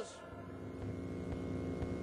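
Steady electrical mains hum, with no change through the pause.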